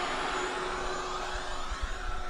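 Recorded vacuum-cleaner sound played back: a steady whooshing hum with a faint steady whine that starts suddenly.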